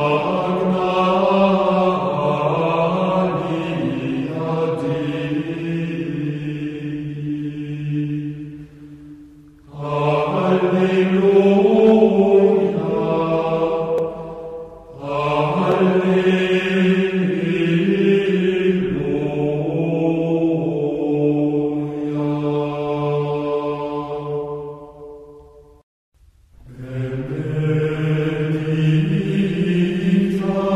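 Gregorian chant sung by low male voices in long, slow phrases on a single melodic line. It pauses briefly about ten, fifteen and twenty-six seconds in.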